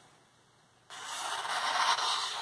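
A paper catalogue rubbing and rasping as it is handled, starting abruptly about a second in and getting louder toward the end.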